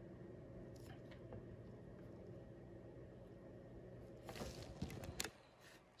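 Near silence: faint steady room hum, with brief handling rustles and one sharp click a little past four seconds in as the microscope and camera are being set up.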